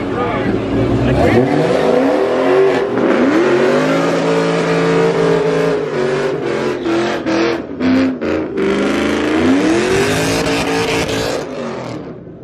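Dodge Charger's HEMI V8 revving hard over and over during a line-lock burnout, its pitch sweeping up and holding high several times as the rear tyres spin and smoke. The sound drops off abruptly just before the end.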